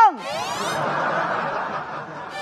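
Audience laughing, opening over a performer's voice that drops in pitch.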